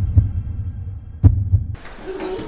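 Heartbeat sound effect: two deep lub-dub double thumps, the second pair about a second and a quarter after the first, cutting off suddenly near the end.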